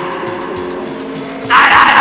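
Live industrial rock: a drum-machine beat pulses under a sustained droning chord. About one and a half seconds in, a loud, harsh grinding noise cuts in over it.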